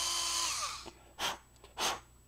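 A small electric drill whines steadily as it bores out the tiny air holes in a toy blaster's plastic plunger, then spins down and stops within the first second. Two brief soft noises follow.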